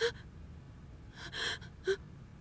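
A woman's tearful gasping breaths: three short, breathy intakes, the middle one the longest, each with a slight catch in the voice, as she holds back sobs.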